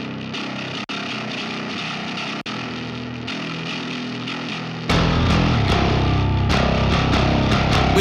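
Heavily distorted metal bass playback: the bass DI crushed through the Klank amp plugin with the drive pushed high and mids and treble boosted, harsh and thin with little deep low end. About five seconds in, a louder, fuller bass with a strong deep low end comes in.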